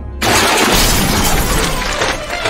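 A cartoon sound effect over intro music: a sudden loud burst of dense, hissing noise about a quarter second in, which carries on as the music plays beneath it.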